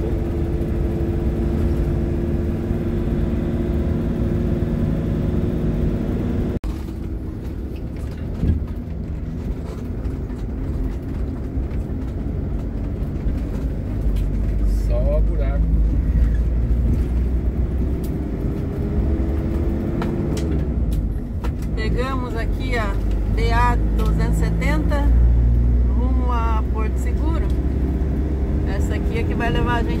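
Motorhome engine and tyre noise heard from inside the cab while driving along an asphalt road: a steady low drone with the engine's hum shifting slightly in pitch, broken abruptly about six seconds in.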